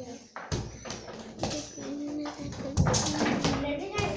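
People talking, with a few sharp knocks or taps in between.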